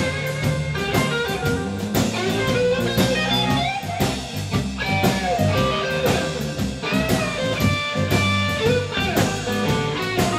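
Live blues-rock trio playing an instrumental passage: a Telecaster electric guitar takes a lead solo full of bent notes over a drum kit and bass.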